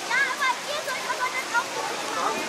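Bystanders talking over a steady rushing background noise.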